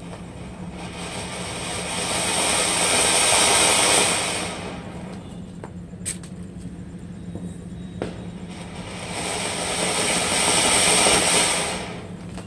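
Maharani anar (koti fountain firework) spraying sparks with a rushing hiss that swells up and dies back twice. A couple of sharp pops come in the lull between the surges.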